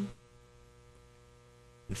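Faint steady electrical mains hum in a pause between words. A man's speech trails off at the start and resumes just before the end.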